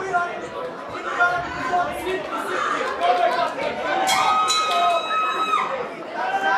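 Boxing crowd shouting and chattering, many voices overlapping, with one voice holding a long shout about four seconds in.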